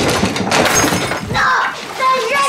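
A loud, noisy crash-like burst lasting over a second, then a child's high-pitched shout near the end.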